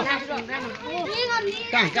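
Voices of children and adults talking and calling out over one another, with rising and falling pitch.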